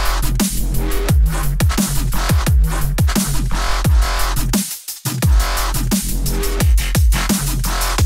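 Electronic dance track: a kick drum striking over a steady sub-bass line, with busy hi-hats and synths above, playing through an equalizer while its lowest band is being moved to make the kick stand out against the bass. The music drops out briefly near the middle.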